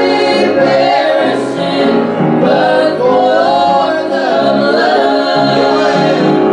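Voices singing a gospel hymn in church, held notes carried steadily through, with piano accompaniment.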